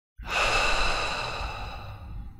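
A long breathy exhale that cuts in abruptly out of silence and fades away over about two seconds.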